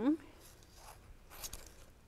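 Scissors cutting through the paper backing of a strip of adhesive foam tape: a faint cut, then a brief louder one about one and a half seconds in.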